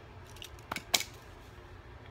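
Two sharp clicks of cut-up plastic credit card pieces being handled close to the microphone, the second louder.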